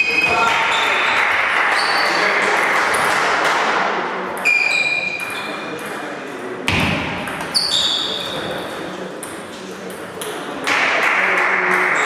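Celluloid or plastic table tennis balls clicking and pinging off bats and tabletops in rallies at several tables in a large hall, with many irregular clicks overlapping.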